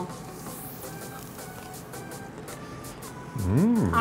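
Faint background music, then near the end a short appreciative "mmm" of someone tasting food, its pitch rising and falling.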